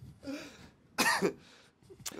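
A man coughing to clear his throat, in two bursts: a softer one, then a louder, sharper one about a second in.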